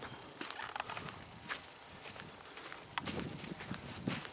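Footsteps on grass and dry earth: irregular soft steps with a few sharper clicks.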